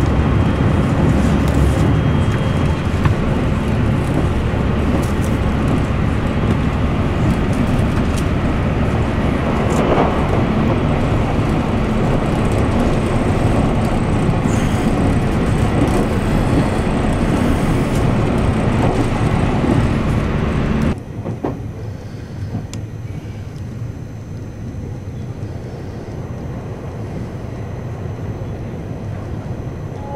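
Moving train heard from inside the passenger car: a steady, loud running rumble of wheels on track. About two-thirds of the way through it drops suddenly to a quieter, lighter running noise.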